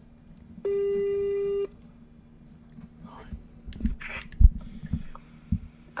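Telephone ringback tone: a single steady one-second ring about half a second in, as a call is placed, followed later by a few soft knocks.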